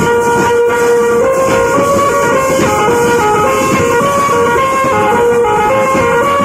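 Tasa party band playing: continuous loud drumming and metal percussion, with a sustained reedy melody line moving up and down in steps over the beat.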